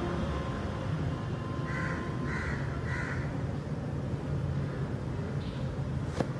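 Three short harsh calls, like a bird's, about half a second apart, over a steady low background rumble.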